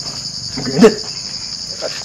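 Crickets chirping in a steady, high, finely pulsing trill. A short spoken word or exclamation cuts in briefly a little under a second in.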